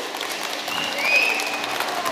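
Audience applauding as the song ends: a steady patter of many hands clapping.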